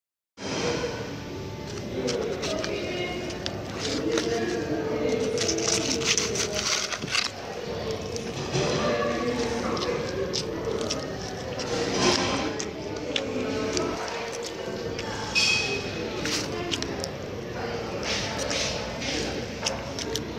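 Indistinct chatter of several voices in a restaurant dining room, running throughout, with scattered sharp clicks and knocks.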